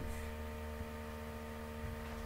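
Steady low electrical hum made up of several constant tones, the background noise of the recording.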